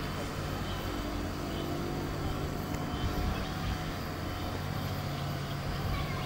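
Outdoor ambience: a steady low hum under a wash of noise, with faint voices.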